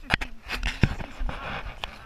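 Footsteps of a hiker walking on a dirt and stony forest trail: several sharp scuffing steps with rustling in between.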